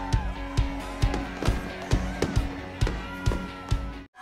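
Upbeat pop song in an instrumental stretch, with a steady drum beat a little over two beats a second under held and gliding melody lines.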